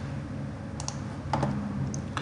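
A few light clicks of computer input, about a second in and again about a second and a half in, over a steady low hum.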